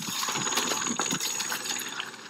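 Steady background noise of an idling vehicle engine, with a thin steady high tone above it and a few faint knocks.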